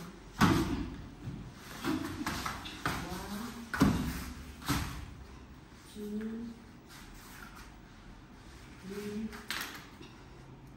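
Wrestlers' bodies thudding and scuffling on interlocking foam mats during a takedown, with the loudest thuds about half a second and about four seconds in, and a few brief vocal sounds near the end.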